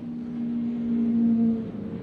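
Racing pickup truck engines running in a steady note as the trucks drive by. The note grows louder, then drops off about a second and a half in.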